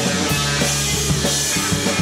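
Punk rock band playing live: guitar and drum kit at full tilt, loud and steady.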